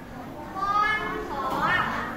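A young girl's voice speaking, starting about half a second in and rising in pitch near the end.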